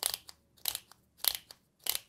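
The dosing clicker on a Restylane Vital hyaluronic acid filler syringe being pressed while it is primed: four sharp clicks, evenly spaced about two-thirds of a second apart. Each press of the clicker meters out a set dose of filler.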